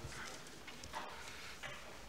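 Faint footsteps on a hard floor, three soft taps over the quiet room noise of a large hall.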